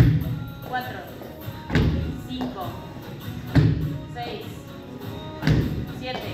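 Feet landing on a wooden plyometric box during repeated box jumps: a sharp thump about every two seconds, four in all. Background music with singing runs underneath.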